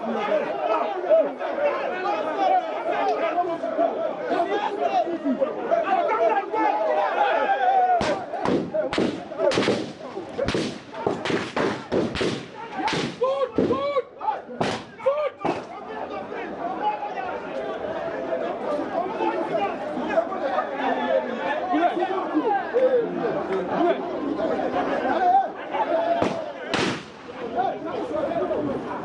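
A crowd of people talking and shouting, broken in the middle by about a dozen sharp bangs in quick, irregular succession over some eight seconds: gunshots fired amid the crowd.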